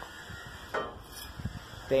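Quiet background with a brief wordless vocal sound from a man, a short hiss and a couple of soft knocks, typical of handling noise, before he starts speaking again at the very end.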